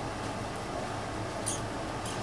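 Room tone: a steady low hum with background hiss, and one faint short high tick about one and a half seconds in.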